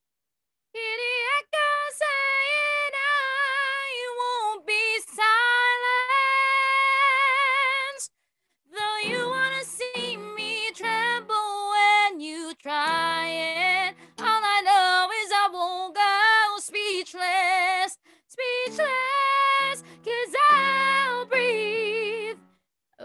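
A woman singing a high, held melody with vibrato, in phrases with short breaks for breath, over lower sustained accompaniment notes, heard through a video call.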